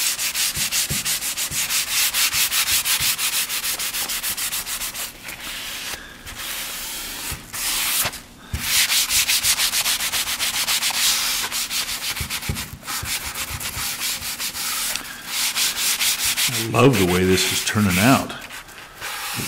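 Sanding sponge rubbed by hand in quick back-and-forth strokes, about four or five a second, over a painted oak cabinet door, with a few short pauses. It is sanding black glaze off the white-primed surface and leaving it in the open oak grain, the cerusing step.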